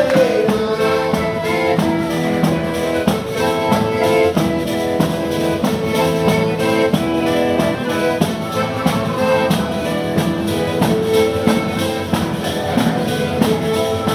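Live folk dance music: a small band playing a tune with held melody notes over a steady, quick beat, without a break.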